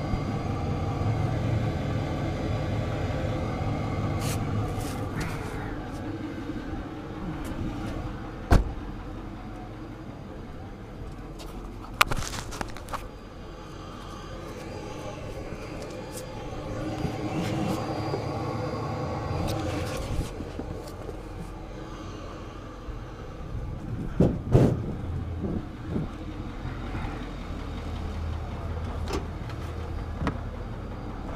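Tow truck engine running steadily, with a few sharp metal knocks and clanks from around the truck.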